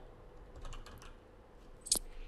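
Faint computer keyboard typing: a few light key clicks, then one sharper click near the end.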